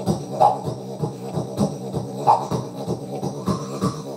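Didjboxing: a didgeridoo-style drone buzzed with the lips and voice, held unbroken, with quick rhythmic beatbox hits layered over it and twice a brighter vowel-like 'wah' sweep, all made by mouth into a microphone played through a bass amp with no effects.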